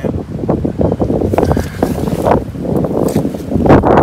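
Wind buffeting the camera microphone, an uneven low rumble that grows stronger near the end.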